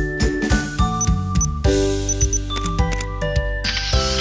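A camera shutter sound effect over cheerful children's background music with a steady beat.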